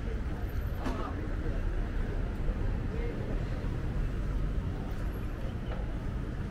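Street ambience: a steady low rumble of road traffic, with passers-by talking faintly.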